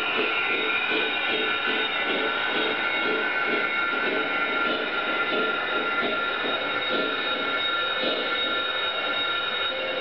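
Lionel O-gauge model train running on its track, with a steady high whine of several tones over a rhythmic low clatter.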